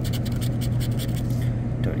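The silver latex coating of a scratch-off lottery ticket being scraped off with a hand-held tool, in quick short strokes about ten a second, with a brief pause near the end.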